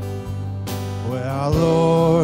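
Live worship-band music: acoustic guitar strumming under sustained chords, with a singing voice coming in about a second in and rising to a held note.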